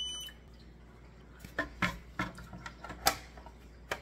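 A short high electronic beep, then several sharp plastic clicks and knocks as the plastic pod deck is set and pressed onto the plastic water reservoir of a hydroponic garden, over a faint low hum.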